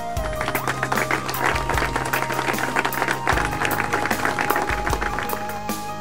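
Background music with a small group applauding over it; the clapping starts just after the beginning and dies away near the end.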